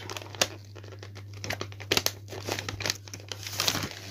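Paper pattern sheets crinkling and rustling as hands fold and hold the layers, with many small irregular crackles.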